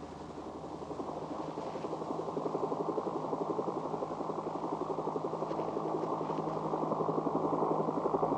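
Helicopter engine and rotor running, a rapid, even beat that slowly grows louder.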